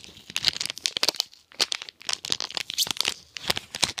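Trading cards and a foil booster-pack wrapper being handled: irregular crinkling with short, light clicks, easing off briefly midway.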